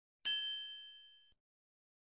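A single bright, bell-like ding from a logo-reveal sound effect. It strikes once about a quarter second in and rings out high, fading over about a second.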